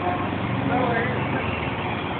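Indistinct voices talking over a low, steady mechanical hum.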